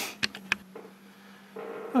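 Low room tone with a steady mains-like hum, broken by a sharp click at the edit between two recordings and two fainter clicks within the first half-second. A man's voice starts near the end.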